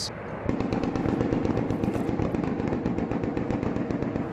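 Automatic gunfire, shots following one another many times a second in a long unbroken run that starts suddenly about half a second in.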